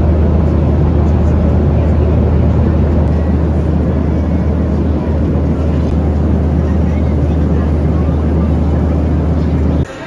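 Steady airliner cabin noise of a Boeing 737 in cruise: a deep, even drone of engines and rushing air. It cuts off suddenly just before the end.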